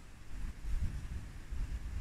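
Wind buffeting the microphone: an uneven low rumble that swells in gusts, stronger from about half a second in.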